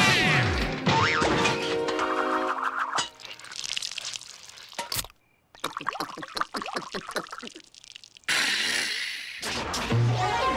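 Cartoon soundtrack of music and comic sound effects. It opens with falling whistle-like glides, then after a short gap of silence comes a run of quick, even gulping effects as a can of soda is drunk, about five a second. A loud burst follows near the end.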